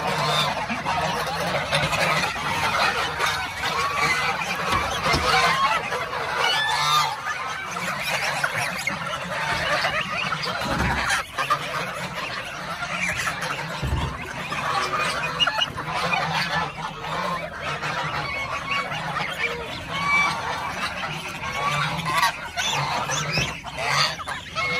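A crowded flock of domestic geese honking continuously, many voices overlapping.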